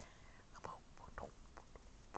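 A few faint, brief soft voice sounds over quiet room tone.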